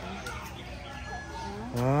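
Faint background chatter of people, then near the end a person's voice begins with a drawn-out "ah" that runs into speech.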